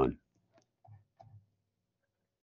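A man says "Done", followed by a few faint clicks about a second later, the clicks of a computer mouse.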